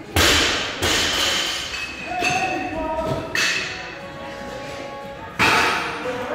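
Loaded barbells with rubber bumper plates dropped onto the gym floor: about five heavy thuds with a metallic ring after each, the loudest near the start and again about five seconds in.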